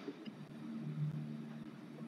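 Faint, steady low hum with light background hiss from an open call microphone.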